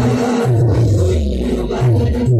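Loud live band music blasting from a truck-mounted loudspeaker stack, with a repeating bass line and a man's voice shouting over the microphone, harsh and distorted.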